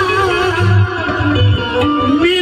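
Qawwali music led by harmonium, its held notes moving from one pitch to the next over a low beat.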